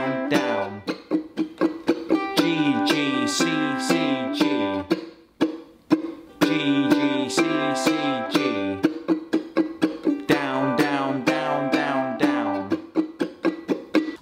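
Kala ukulele strummed in a down-down chord pattern, alternating G and C major chords through the chorus progression, with a short break in the strumming about five seconds in.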